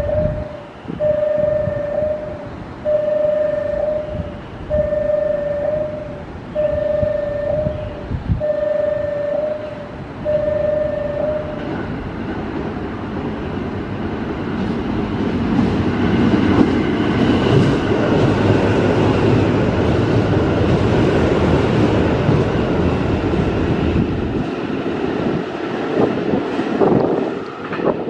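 Station platform approach-warning tone repeating steadily, a held beep about every two seconds, stopping about 12 s in. Then a JR 281 series six-car limited express passes through at speed without stopping, its running noise building and staying loud for several seconds before easing off.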